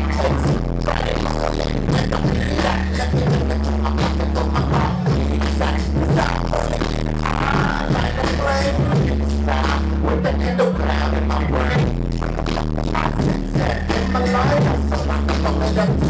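Live hip-hop over a venue PA: a loud, bass-heavy beat with a rapper's voice on the microphone over it.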